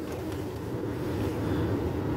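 Steady low hum of a car driving, with tyre and engine noise heard from inside the cabin.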